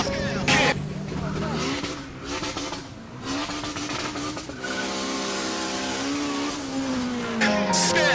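Car engine revving hard as the car accelerates with wheelspin. The engine note climbs, holds high, then falls away over the last second or so.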